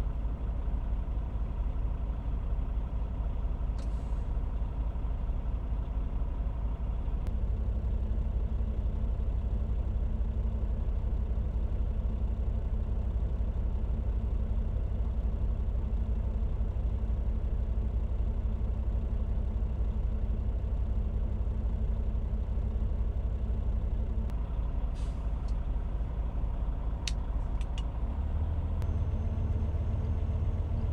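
Heavy truck's diesel engine idling steadily in the cab while the air compressor builds brake-system pressure. A few light clicks come near the end, and the low rumble gets louder just before the end.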